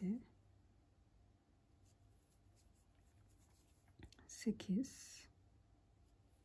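Faint scratching and rustling of a crochet hook drawing wool yarn through single crochet stitches, in a quiet small room. About four seconds in, a woman's voice gives a short breathy murmur.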